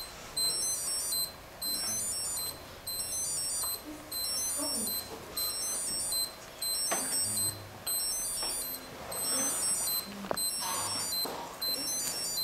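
A pattern of short, very high-pitched electronic tones that repeats a little more than once a second, with faint voices underneath.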